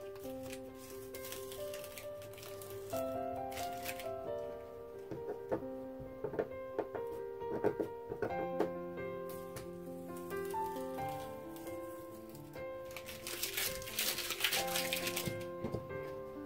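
Soft background music, with masking tape being peeled off watercolor paper and crinkled in short rustling bursts; the longest and loudest comes about three-quarters of the way through.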